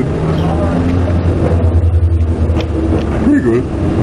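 Steady low outdoor rumble, with short murmured voice sounds near the start and again late, and a couple of light clicks.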